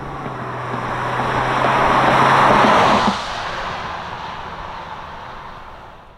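A car passing by: a rushing sound with a low engine hum swells to a peak about two and a half seconds in, drops off sharply, then fades away.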